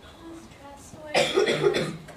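A person coughing: a short, loud bout a little over a second in.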